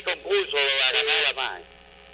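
A caller's voice over a telephone line, with the narrow, thin sound of phone audio and a drawn-out middle stretch, stopping about one and a half seconds in and leaving a low hum.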